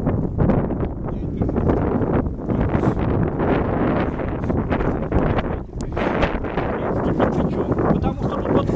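Wind buffeting the microphone: a loud, uneven rumbling that gusts and dips throughout.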